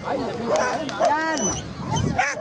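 A dog barking: a few short, high barks, the loudest about a second in.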